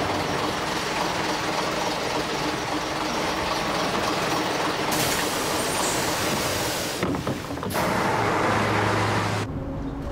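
Red double-decker bus driving, its engine and road noise a dense, steady rumble and hiss. The sound changes abruptly twice, about five and seven seconds in, and a steady low hum runs near the end.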